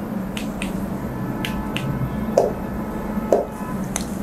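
Light, sharp clicks, several in quick pairs, and two soft taps from hand or pen contact with an interactive display board, over a steady low room hum.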